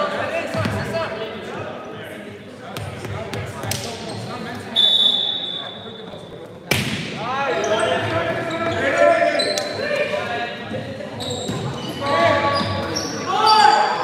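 A referee's whistle blows one steady note for about a second, and a second or so later a volleyball is struck with a sharp smack on the serve. A rally follows, with players shouting, sneakers squeaking on the hardwood floor, and the sound echoing around the gym.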